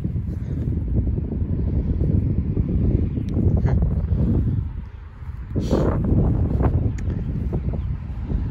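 Wind buffeting the phone's microphone, a rumbling low noise that eases briefly about five seconds in, with light footsteps on dry grass.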